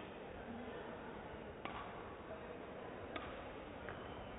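Badminton racket strings striking a shuttlecock twice, about a second and a half apart, in a rally, over the steady background hum of a sports hall.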